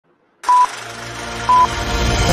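Film countdown leader sound effect: two short, steady high beeps a second apart, starting about half a second in, over a low hum that slowly builds.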